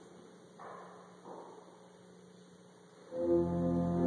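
A church organ begins playing about three seconds in, with a sudden, loud, sustained chord over a deep bass. Before it there is only low room tone and two faint, brief soft noises.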